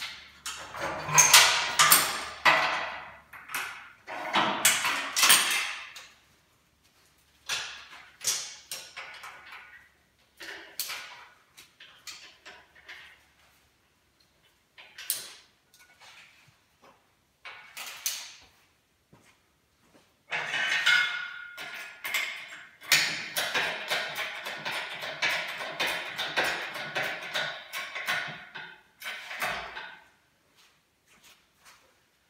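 Metal clanking and rattling in irregular bouts as a lifting chain and strap are handled and hooked to an engine crane's boom. A denser run of rattling with some ringing starts about two-thirds of the way in.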